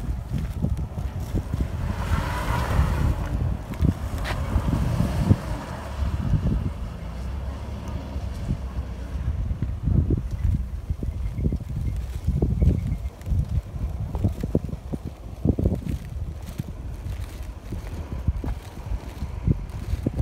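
Wind buffeting a phone microphone outdoors: an uneven, gusting low rumble, with a brief hiss about two seconds in.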